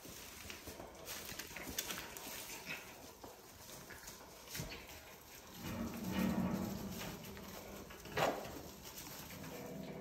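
A sow in labor gives a low, drawn-out grunt about six seconds in, lasting a couple of seconds. A single sharp click follows a little after eight seconds.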